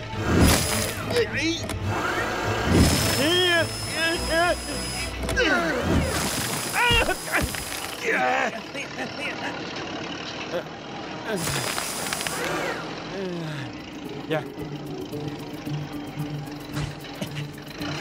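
Cartoon soundtrack: characters' wordless yells and grunts over background music, with sound effects of a big logging machine's motor and some thumps.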